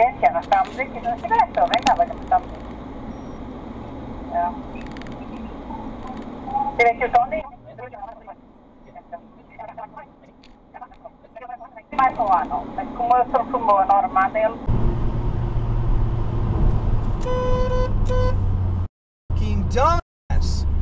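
Car cabin road and engine noise on a highway, swelling to a heavy rumble about fifteen seconds in. A car horn sounds once, for about a second, a couple of seconds later.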